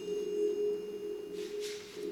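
Orchestra playing softly: a held chord in the lower-middle range with a set of high ringing tones above it that die away about one and a half seconds in, then a short soft swish near the end.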